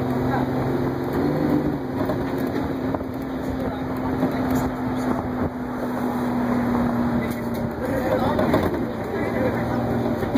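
Inside a moving Crown Supercoach Series II bus: a steady engine hum under road and wind noise. The hum drops away about three-quarters of the way through.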